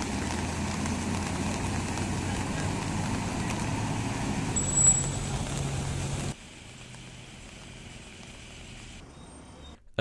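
Steady outdoor street noise with a low vehicle engine hum; about six seconds in it drops suddenly to a quieter, steady traffic hum.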